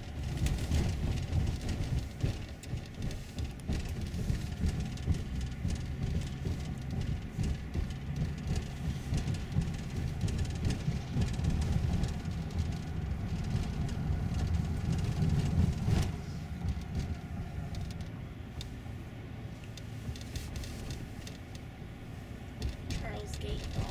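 Car cabin noise while driving: a steady low rumble of engine and tyres on the road heard from inside the car, with a short knock about three-quarters of the way through.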